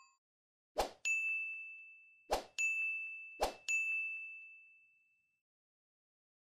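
Three bright notification-style dings from the pop-up button sound effects of a subscribe animation. Each ding follows a short pop, rings at one high pitch and fades slowly. They come about a second and a half apart, and the last fades out about two seconds after it sounds.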